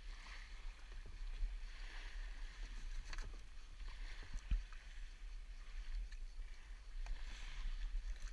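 Sea kayak paddling: the paddle blades splash into the water every second or two, with small waves washing onto a pebble beach close by and a steady low rumble on the microphone.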